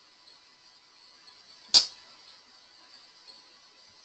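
A single sharp knock or click about two seconds in, over faint steady background hiss.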